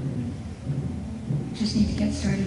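Pages of a book being handled and turned close to a microphone, with a brief sharper rustle near the end.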